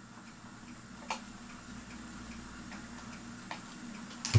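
A clock ticking steadily and faintly, with two sharper metal clicks, about a second in and again near the end, as the small retaining tabs holding the clock's dial are bent down.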